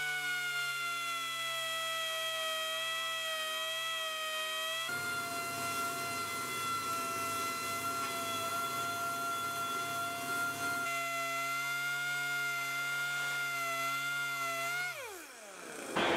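Pneumatic dual-action sander running with a steady whine as it smooths a welded steel rock ring with a 40-grit pad. A rougher grinding noise joins in through the middle stretch, and about a second before the end the whine falls steeply in pitch as the sander spins down.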